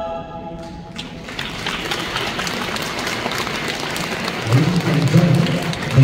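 An a cappella choir's final chord ending, then audience applause from about a second in. A man's voice over the sound system comes in near the end.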